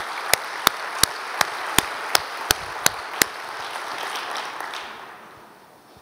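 Audience applauding, with one person's claps close to the microphone standing out sharply about three times a second until a little past halfway; the applause then dies away.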